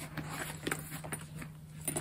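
Faint handling noises, a few small clicks and rustles, over a steady low hum.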